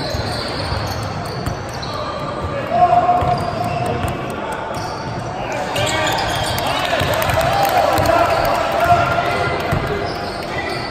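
A basketball bouncing on a hardwood gym floor among players' and spectators' voices echoing in a large hall. There is a short loud shout about three seconds in, and the voices grow louder from about six seconds in.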